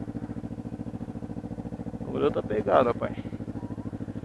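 Kawasaki Ninja 250R's parallel-twin engine idling steadily at a standstill, with an even pulsing beat. A short burst of voice comes about two seconds in.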